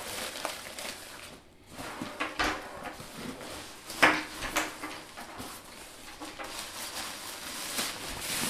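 Nylon camera backpack being handled as its built-in rain cover is pulled out and drawn over it: fabric rustling with scattered knocks of straps and buckles, a sharper knock about four seconds in.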